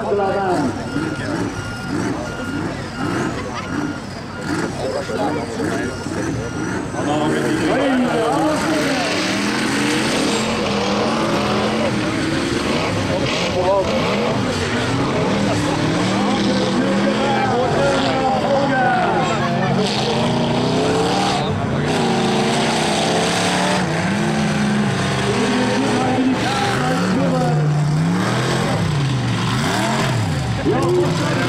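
Several racing combine harvesters' engines revving at once, loud and continuous from about eight seconds in, their pitches repeatedly rising and falling as they are pushed around the track.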